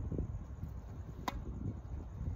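One short, sharp tap of a tennis ball about a second in, faint against a low, steady rumble of wind on the microphone.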